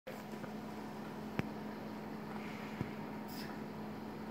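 Steady low room hum from running appliances, with a thin constant tone under it. Two small sharp clicks, about a second and a half in and just under three seconds in, as plastic welding goggles are handled and fitted over the eyes.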